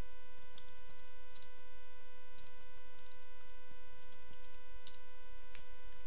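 A steady electrical hum with a faint whine of several even tones, and a few faint keyboard clicks scattered through it as a password is typed twice at a terminal prompt.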